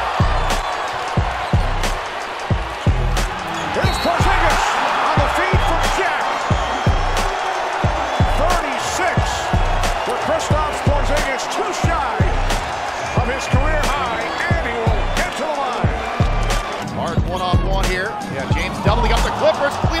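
Basketball being dribbled on a hardwood arena court, many short bounces one after another, over steady crowd noise and arena music.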